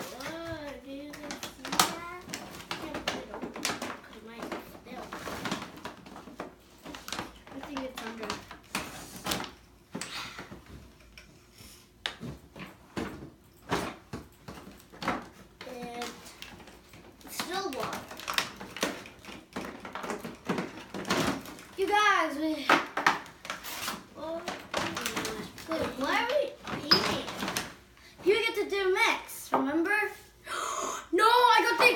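Young girls talking, though little of it is clear words, with many short plastic clicks and knocks from a slime-making kit being stirred and handled on a table. The talking is sparse in the first half and grows busier from about halfway through.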